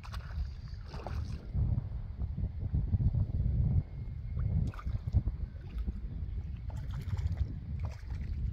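Wind buffeting the microphone in a gusting low rumble, with a few brief splashes from a hooked trout thrashing at the surface as it is played to the shore and netted.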